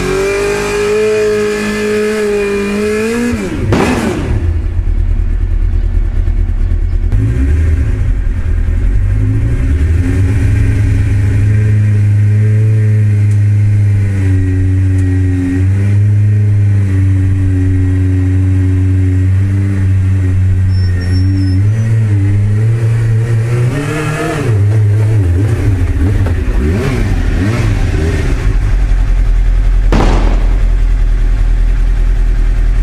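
Sports motorcycle engine revving with its rear wheel spinning in soft dirt. The revs are held high, then drop sharply a few seconds in; after that the engine runs at lower, fairly steady revs, and near the end the revs rise and fall unevenly.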